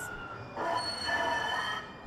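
TRAX light rail train's wheels squealing as it rounds a tight curve: a high, steady, multi-tone screech that starts about half a second in and fades near the end. This is curve squeal, the kind of noise problem that makes transit vehicles excessively loud.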